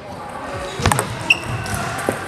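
Table tennis ball struck on a long serve: a few quick sharp clicks of bat contact and the ball bouncing on the table just under a second in, then another sharp click a moment later, over the background hum of a busy sports hall.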